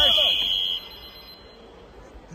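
Electronic match-timer buzzer giving one steady, high-pitched tone that cuts off just under a second in, signalling time up for the karate bout.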